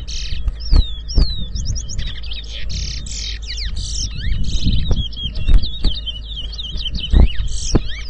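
Two caged towa-towa finches singing against each other in a whistling match: song after song of rapid, high whistled notes with many down-slurred sweeps, barely pausing. A few dull thumps sound about a second in and again near the end.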